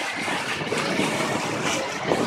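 River cruise boat under way: a steady wash of engine and water noise.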